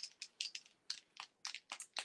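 Faint, irregular light clicks and taps, about five a second, from an Artistro paint marker being handled.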